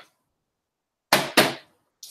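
Two short scraping rustles about a third of a second apart, about a second in, as things are handled and pulled out of a cardboard moving box.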